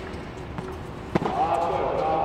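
Tennis balls being hit with rackets and bouncing on an indoor hard court, with one sharp pop about a second in, followed by a high-pitched child's voice.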